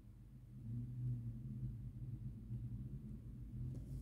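Low steady hum that swells slightly about half a second in. Near the end comes a faint brief rustle as embroidery floss is drawn through the cross-stitch canvas.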